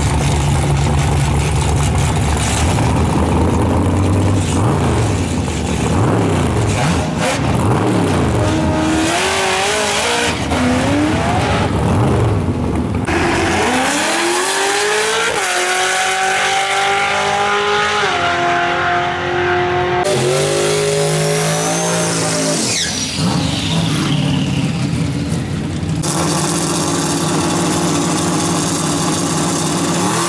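Chevrolet Corvette V8 engines revving at the line and launching in drag runs, the engine pitch climbing in steps through the gears as each car pulls away. The sound changes abruptly several times between runs.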